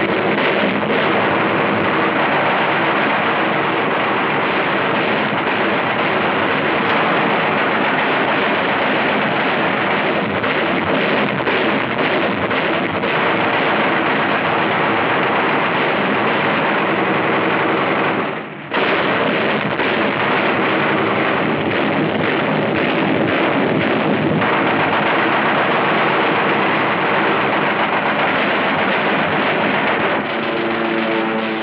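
Sustained rapid gunfire from a warship's automatic deck guns and machine guns: a dense, unbroken rattle of shots over a steady low drone, with a short break about two-thirds of the way through.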